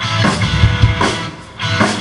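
Live rock band playing over a stage PA: electric guitar with drum-kit hits. There is a short lull about three-quarters of the way through before the playing picks up again.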